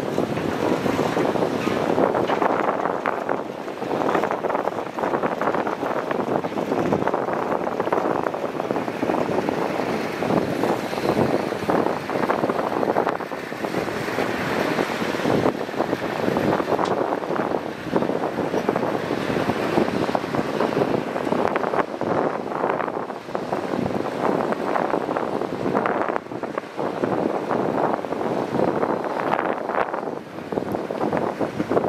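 Hitachi Zaxis hydraulic excavator working under load as it digs soil and swings to load a dump truck, its diesel engine and hydraulics making a loud, steady machine noise throughout.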